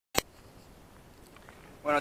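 One sharp click just after the start from the handheld camera being handled, then only a faint low background with a few tiny ticks. A man's voice begins near the end.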